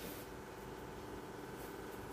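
Faint, steady kitchen room tone: a low even hum with no distinct events.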